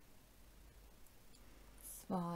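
Near silence: room tone, with a couple of very faint ticks.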